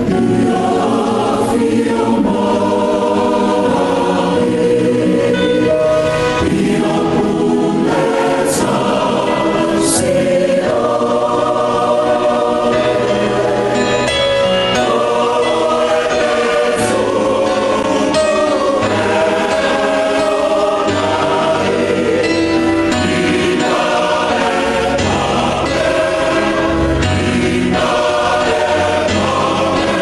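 A choir singing a hymn in sustained, slow-moving chords over a steady bass accompaniment.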